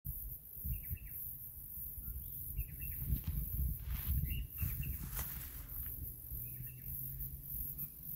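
A bird calling outdoors in short chirps, four times spaced a couple of seconds apart, over an uneven low rumble.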